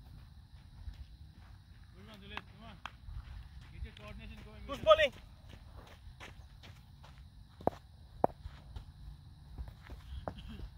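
Distant voices of cricket players calling across an open field, with one loud shout about halfway through. Near the end come two sharp knocks about half a second apart, over a low rumble of wind on the microphone.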